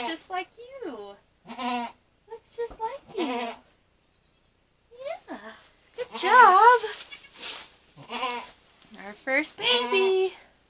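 Goats bleating in a string of short calls, with a brief lull around four seconds in. The loudest is a longer, wavering bleat about six seconds in.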